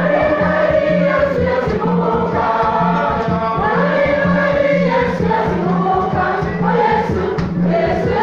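Church choir of mixed voices singing a gospel song together, over a steady beat from hand drums of about two strokes a second.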